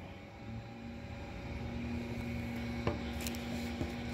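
A steady low machine hum sets in about half a second in, with two light clicks near three and four seconds in.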